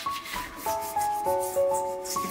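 A stainless steel kitchen sink being scrubbed with a scrub pad in a rubber-gloved hand: quick repeated scratchy rubbing strokes, over soft instrumental music.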